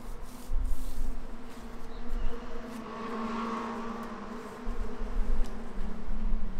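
Dull low thumps from hands handling things on the desk, over a steady buzzing hum that swells in the middle and then fades back.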